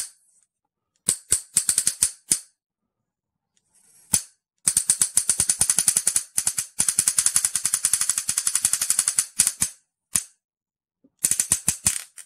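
Homemade high-voltage arc igniter sparking across its electrodes: rapid trains of sharp snaps in several bursts. The longest burst, in the middle, lasts about five seconds, and there are short silences between bursts. The sparks are being held to alcohol-soaked paper and cotton to light it.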